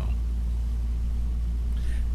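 A steady low hum with no other sound over it; the same hum runs on under the voices either side.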